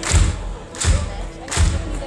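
Live band playing, led by a steady drum-kit beat: a kick drum and a cymbal hit together about every three quarters of a second over the rest of the band.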